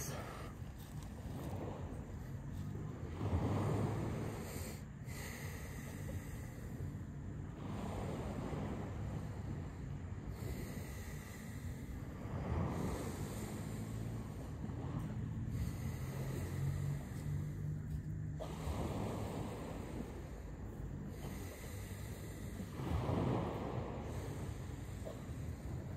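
A man breathing deeply and forcefully in and out, Wim Hof method power breaths, in a slow rhythm of a breath every few seconds.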